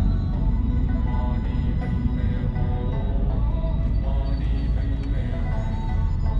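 Music with held tones and a slowly moving melody, over the steady low rumble of a car driving.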